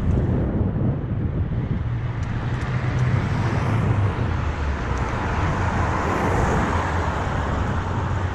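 Wind rushing and buffeting over an action camera's microphone as a mountain bike rolls along asphalt, with a steady low rumble of tyre and road noise. The rush grows a little brighter about halfway through.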